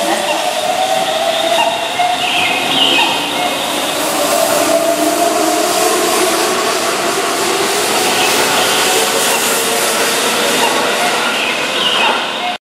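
Keihan 9000 series electric train pulling out along a platform, its VVVF inverter motors giving a whine of several tones that rises slowly in pitch as it gathers speed, over the rumble of wheels on rail.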